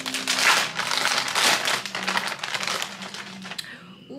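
Plastic packaging crinkling and rustling as clothing is pulled from a tightly vacuum-sealed bag, loudest in the first half and fading toward the end.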